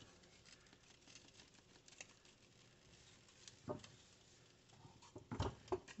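Faint pattering and soft handling sounds as dry spice rub is shaken from a jar onto a raw pork roast and rubbed in by hand, with a few small knocks and a duller thump near the end.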